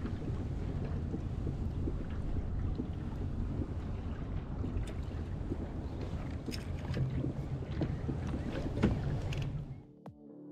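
Wind buffeting the microphone in a steady low rumble, with a few faint clicks of fishing tackle being handled: a small lure and a baitcasting reel. The loudest click comes near the end, and then the sound fades out.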